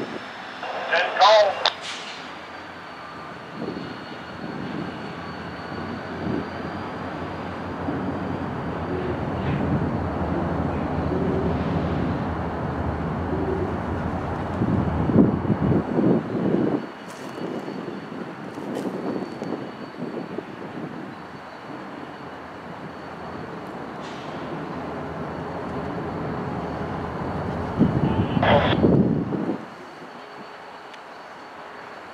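Diesel-electric freight locomotive engines running as a two-unit lash-up pulls a cut of covered hoppers slowly through the yard. The engine rumble is steady, swelling louder about halfway through and again near the end.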